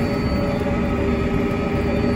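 Tractor engine and drivetrain running steadily, heard from inside the cab while the tractor drives with its planter working, with a few faint steady whines over the low rumble.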